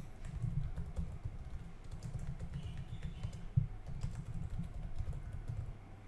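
Typing on a computer keyboard: a continuous run of quick key clicks as a line of text is typed out.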